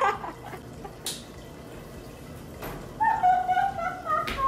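Wet laundry being handled and tossed into a clothes dryer: soft rustling with a brief swish about a second in. Near the end, a woman's wordless voice holds a note for about a second.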